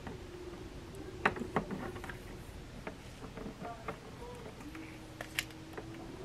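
Light clicks and taps of a power cord and the plastic housing of a slow cooker being handled as the cord is tucked into its cord wrap, with a few sharper clicks about a second in and again near the end.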